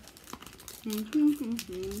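Candy bar wrapper crinkling as a Wham chew bar is unwrapped by hand, with a hummed voice coming in about a second in and louder than the wrapper.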